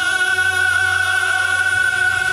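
Two male singers performing a devotional qawwali to the Mother Goddess live through a PA system, holding one long high note without a break.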